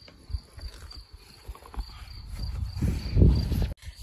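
Insects trilling steadily in a faint, high, pulsing tone. Low rumbling handling noise builds over the last second and a half and cuts off suddenly.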